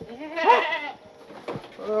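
A single short vocal cry, rising then falling in pitch, about half a second long, near the start.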